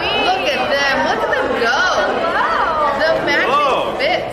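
Indistinct talking and chatter from several voices, with no other distinct sound.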